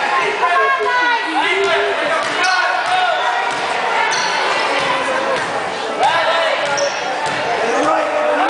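Basketball bouncing on a gym floor as it is dribbled up the court, amid the voices of players and spectators echoing in the gym.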